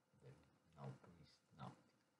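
A man's voice making three short, quiet sounds, close together.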